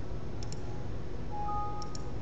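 Two quick mouse clicks about half a second in, then a short two-note electronic alert chime, a lower tone followed by a higher one, from a Windows Vista warning dialog popping up. Two more faint clicks come near the end over steady microphone room noise.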